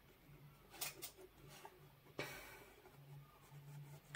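Faint, soft dabbing and brushing of a wet watercolour mop brush on paper, with a light tap about two seconds in.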